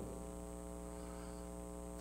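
Faint, steady electrical buzz: mains hum with a ladder of even overtones, unchanging throughout.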